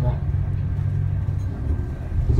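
Steady low engine and road rumble heard from inside a moving tour bus.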